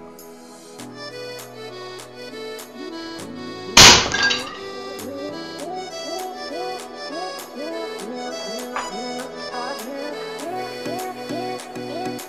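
Background music with accordion, broken about four seconds in by one loud sharp crack: a .22 air rifle slug striking two stacked lead plates and knocking them over, with a short clatter right after.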